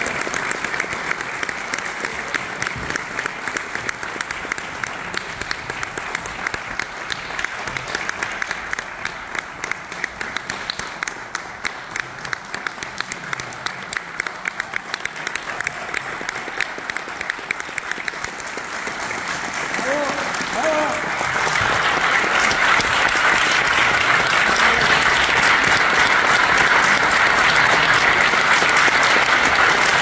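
Audience applauding, dense clapping that eases a little midway and then swells louder about twenty seconds in, holding strong to the end.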